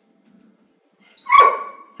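A Weimaraner gives one loud bark about a second and a half in, a high tone trailing off after it, as it snaps up at a fly on the wall.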